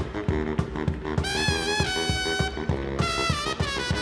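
Live brass-and-drums band, with baritone saxophone, trumpet and drums, playing a fast dance groove over a steady drum beat. A horn holds a long high note with a bend in the middle.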